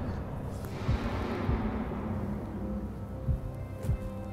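Background music of held tones, with a few low drum-like thumps about a second in and near the end.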